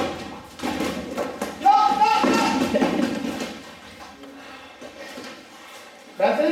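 An indistinct voice calling out over the echoing noise of a gym hall, loudest about two seconds in, with a sharp thump at the very start.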